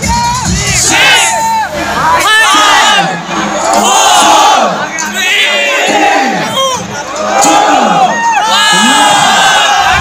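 A large crowd of students shouting and cheering, many high-pitched voices overlapping in rising and falling calls. Music with a thumping bass from the stage speakers plays under it and stops a little over two seconds in.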